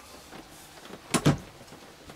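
A short, sharp double knock about a second in, from handling a cardboard bag-in-box wine carton and its plastic pour tap.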